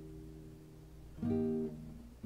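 Nylon-string classical guitar with a capo: a strummed chord rings and fades away, then about a second in a chord is strummed softly and rings briefly.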